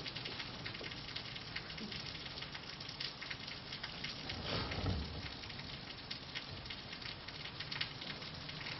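Marker pen writing and underlining on a whiteboard, faint strokes over a steady crackling hiss of recording noise. A brief low sound comes about four and a half seconds in.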